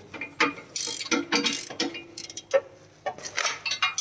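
Ratchet wrench clicking in short, irregular runs as bolts are tightened on the steel frame of a chain trencher being assembled.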